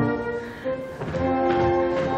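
Orchestral Ländler dance music with strings holding long notes. It softens briefly about half a second in, then new held notes come in.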